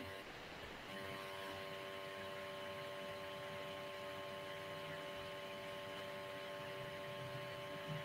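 Faint steady electrical hum made of several fixed tones over low hiss, coming in about a second in and holding level, picked up over a video-call's audio line.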